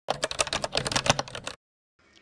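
A rapid run of sharp clicking clatter, a sound effect for an animated logo, that cuts off about a second and a half in.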